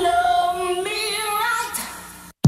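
A pop song on the soundtrack: a high female singing voice carries the melody with the beat and bass dropped out, and it fades toward the end.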